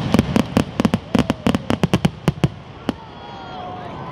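Aerial fireworks crackling overhead: a rapid string of sharp cracks that thins out and stops about two and a half seconds in, with one last crack just before three seconds.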